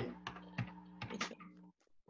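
Typing on a computer keyboard: several light, separate key clicks over a faint, steady low hum.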